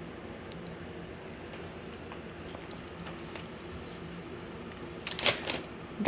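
Quiet room with a faint steady hum, then a couple of short, sharp sounds about five seconds in.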